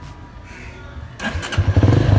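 Hero Honda Karizma ZMR's 223 cc single-cylinder engine being electric-started: the starter cranks briefly a little over a second in, then the engine catches and runs with a loud, rapid, even beat.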